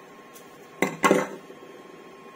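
Two sharp clinking knocks about a quarter second apart, a second in, the second ringing briefly: wires and the panel meter being handled on a wooden table while wires are twisted together.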